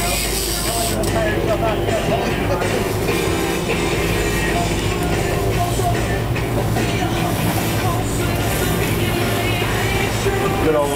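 Boat engine droning steadily under wind and sea noise, with music and voices in the background.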